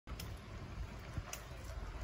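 Faint low rumble with a few soft ticks: outdoor background and handling noise on the microphone of a handheld camera carried along a trail.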